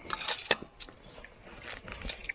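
Metal lid being set onto a metal camping kettle: a cluster of metallic clinks in the first half second, then a few lighter taps.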